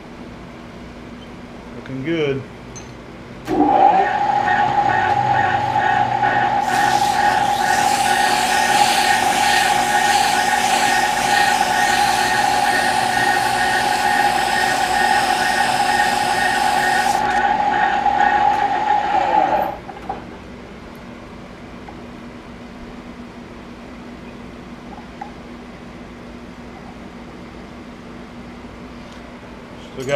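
A lathe starts up about three and a half seconds in and runs with a steady whine for about sixteen seconds before stopping. For about ten seconds in the middle, a strip of abrasive cloth rubs with a hiss against the spinning shaft's spray-welded journal, polishing it down to size.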